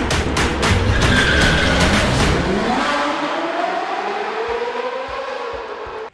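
Sports-car sound effects for an intro sting: an engine revving with tyre squeal, over a dense run of sharp hits and heavy low rumble. After about two and a half seconds the hits stop, and a gliding engine-like tone carries on and fades out by the end.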